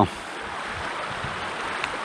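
Steady rush of a shallow river running low over its rocks.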